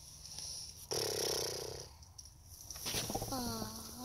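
A young child's voice imitating a tractor engine being cranked over: a raspy, rattling buzz about a second in, then a falling whine near the end. The pretend engine does not catch.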